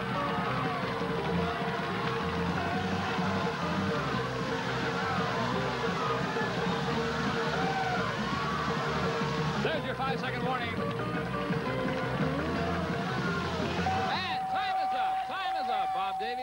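Game-show music playing under shouting voices. About 14 seconds in, a steady tone starts and holds: the stop signal that ends the timed bill grab.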